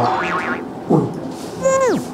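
Comedic 'boing'-style sound effect near the end: a single pitched tone sliding steeply downward in pitch over about half a second.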